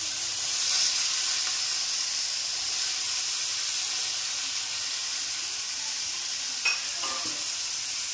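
Sliced red onions frying in oil in a stainless steel kadhai, a steady sizzle. A single sharp click about two-thirds of the way through.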